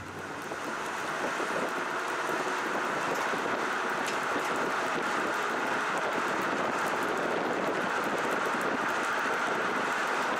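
Trailer tyres rolling on asphalt with a steady rush of road noise and wind, picked up close to the wheel; it swells in over the first second or two and then holds steady.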